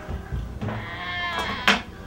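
Wooden glass-paned cabinet door being pulled open, its hinges creaking with a wavering pitch, then a sharp click near the end. A low thump comes at the very start.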